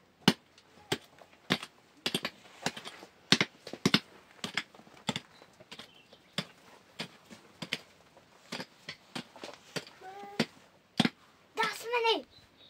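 A run of sharp clicks or taps at irregular intervals, about one to three a second, with brief bits of a voice near the end.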